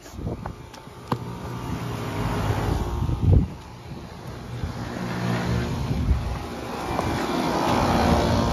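Outdoor air-conditioning condenser units running with a steady hum of compressor and fan. A few faint clicks come early, and a short loud rumble hits the microphone about three seconds in.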